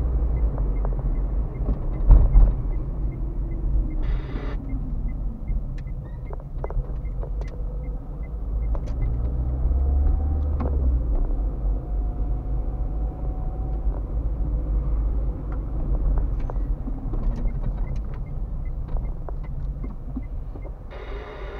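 Car driving along a town street, heard from inside the cabin: a steady low rumble of engine and road noise, with scattered small clicks and rattles and a swell in loudness around the middle.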